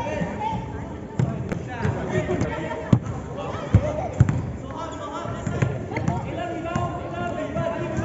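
A basketball bouncing on a court floor during play, in irregular thuds, with voices over it.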